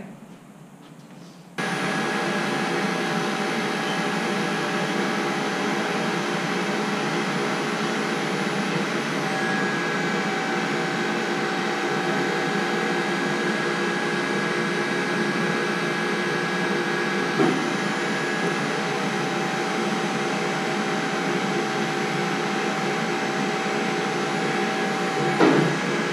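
Model 54 electric tube bender's motor running steadily while it bends a steel tube to 44 degrees. It starts about a second and a half in and stops shortly before the end, with a single brief knock past the middle.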